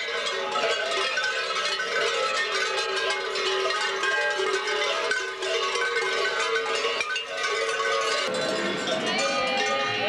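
Many large bells worn on babugeri mummers' costumes clanging together as the dancers jump and shake, a dense steady ringing.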